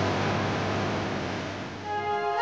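ATV engine running as the quad drives past through mud, engine and spraying mud making a dense noise that fades as it moves away.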